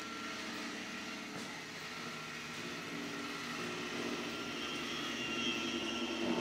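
Steady background hum and hiss of a room, with faint steady tones that grow slightly louder near the end.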